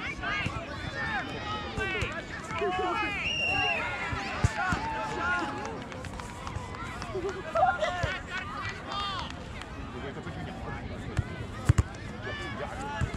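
Voices at a youth soccer match heard from the sideline: children calling out on the field and spectators talking, none of it clear enough to make out. There are a few sharp knocks, one about four and a half seconds in and two close together near the end.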